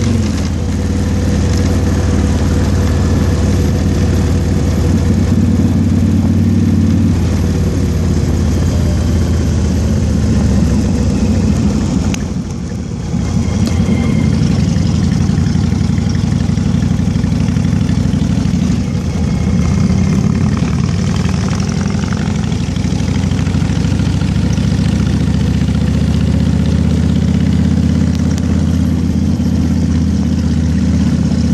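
Car engine running steadily under way, with wind and road noise rushing over the open top. The sound drops briefly about twelve seconds in, then comes back to the same steady level.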